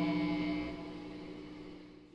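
The last held note of a rock jam dying away: a steady pitched tone with many overtones fading out over about two seconds.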